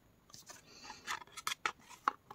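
A laminated flash card is pulled out of the slot of a plastic talking flash card reader and the next card is slid in. There is a faint sliding scrape, then a run of small clicks and ticks that grows a little louder near the end.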